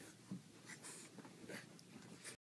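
Faint scuffling and rustling of couch fabric and blankets under a French bulldog and a griffon play-fighting, with puffs of breath from the dogs: a string of short scratchy bursts and a few dull soft thuds.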